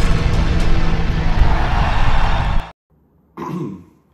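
Loud intro music with explosion sound effects, cutting off abruptly a little under three seconds in. After a brief silence comes a short vocal sound from a man.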